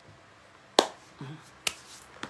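A loud, sharp click about a second in, like a finger snap or tongue click, then a brief low vocal sound and a second, softer click.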